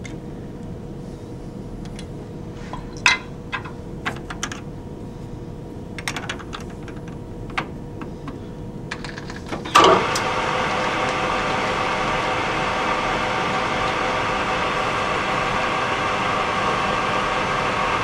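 Scattered metal clicks and knocks as a part is lightly clamped in a metal lathe's chuck. About ten seconds in, the lathe starts with a loud clunk and then runs with a steady motor and gear hum.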